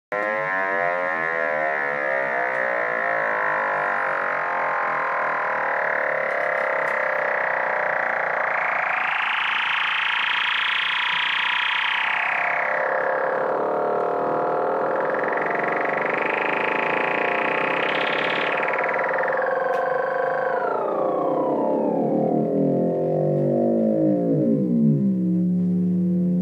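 Octave The Kitten II monophonic analog synthesizer holding one continuous droning note while its sound is swept brighter and darker twice as the controls are moved. In the last few seconds the pitch slides down to a low note.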